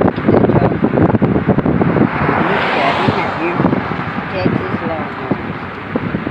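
Road noise from a car driving with its window open, with wind buffeting the microphone. A swell of louder rushing noise comes about halfway through.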